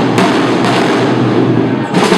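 The drum section of a Spanish cornetas y tambores (bugle and drum) band playing a steady, dense roll, with a few sharper strokes standing out, inside a church; no bugles are playing.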